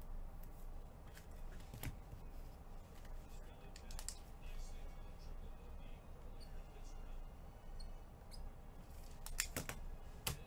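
Quiet handling sounds of gloved hands with a trading card and a clear plastic card holder: soft rubs and scattered light clicks, with a felt-tip marker scratching as it writes. A cluster of sharper clicks comes near the end.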